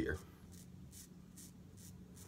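Charcoal double-edge safety razor scraping through lathered stubble on the upper lip: a run of short, faint, scratchy strokes, about two a second.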